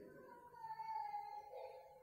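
A faint, drawn-out pitched cry that falls slightly in pitch, lasting about a second and a half.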